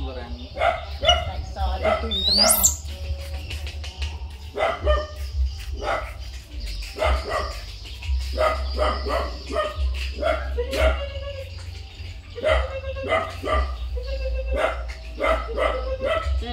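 A dog barking over and over, with a steady low rumble of wind on the microphone beneath.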